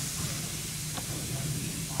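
Background room noise: a steady hiss with a faint low hum, and one faint click about halfway through.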